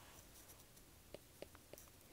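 Near silence, with a few faint taps on an iPad touchscreen in the second half as handwriting is drawn on it.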